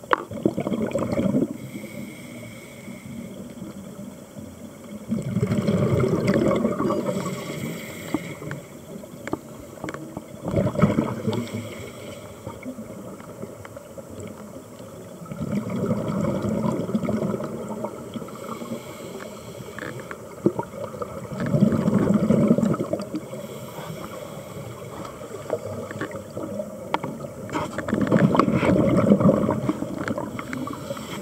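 Scuba diver breathing through a regulator underwater, heard as a bubbling rush of exhaled air about every five seconds, six times, with quieter stretches between breaths.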